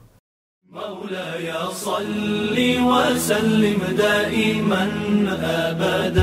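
A brief silence, then a chanted devotional vocal fades in under a second in, with long held notes that grow louder.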